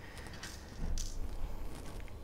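Fabric rustling as a stiff, interfaced fabric panel is handled and folded back by hand, with two brief swishes about half a second and a second in.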